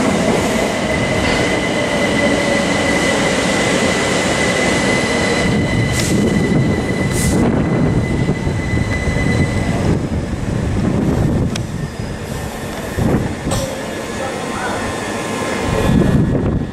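Southern Class 377 Electrostar electric multiple unit running close by, with loud wheel-on-rail noise and a steady high whine for the first ten seconds. A few sharp clicks come about six to seven seconds in, and the sound eases off somewhat after about twelve seconds.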